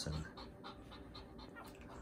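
Goldendoodle in labour panting fast and faintly, short even breaths about six a second: labour panting from the pain of whelping her first litter.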